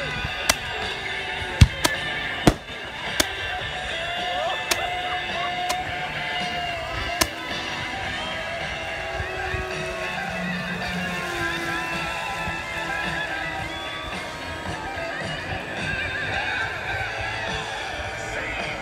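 Fireworks going off as a string of about eight sharp bangs and pops in the first seven seconds, the loudest about a second and a half in. Music plays steadily underneath.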